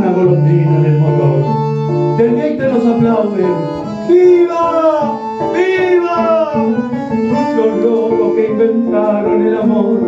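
A tango song: a man singing over bandoneon and guitar accompaniment, with held instrumental notes underneath. About halfway through, his voice makes two strong downward swoops.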